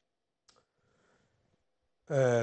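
Near silence: studio room tone, with one faint click about half a second in.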